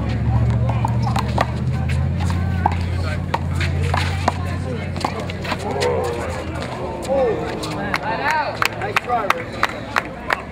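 Sharp cracks of a rubber handball struck by hand and smacking off the concrete wall during a rally, quickening near the end. Background voices of onlookers. A steady low hum that stops about seven seconds in.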